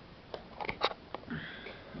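A few light clicks in quick succession, then a short sniff.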